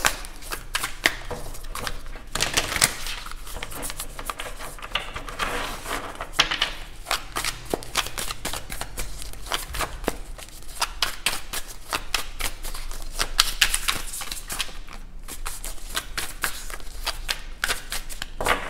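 A deck of tarot cards being shuffled by hand: a long, irregular run of quick card flicks and slaps as cards drop from one hand onto the pack in the other.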